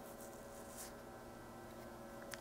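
Quiet room tone with a faint steady hum from powered bench electronics.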